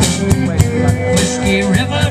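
Live country band playing through a PA: drum kit keeping a steady beat under electric guitar and bass.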